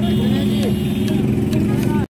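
A steady low engine hum with street noise and murmuring voices around it.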